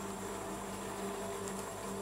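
Steady buzzing hum of a rolled-ice-cream machine's cold-plate refrigeration unit running, with a faint tick or two of pomegranate seeds being picked apart.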